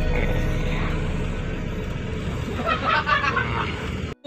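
The coach's diesel engine rumbles low and steady inside the cabin as the bus creeps forward, with music playing in the background.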